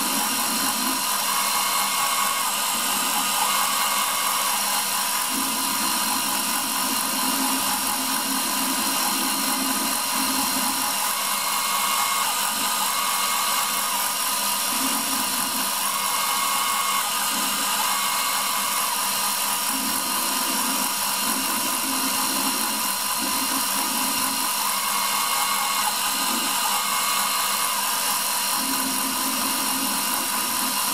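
CNC router spindle running steadily with a high whine while its engraving cutter works into a brass ring. A separate tone starts and stops every second or two as the machine's axes move between strokes of the lettering.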